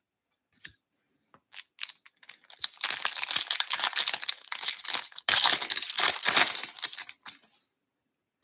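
A few light taps, then an Upper Deck Ice hockey card pack's wrapper crinkling and tearing as it is ripped open by hand, in two spells of about two and a half seconds each with a brief break between.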